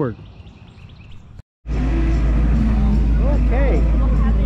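Faint bird chirps over quiet woodland ambience, then after a sudden cut a loud, steady low rumble of wind on the microphone, with distant voices and music over it.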